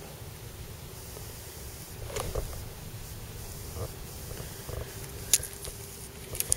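Faint steady low rumble with a few light clicks and taps, the sharpest about five seconds in.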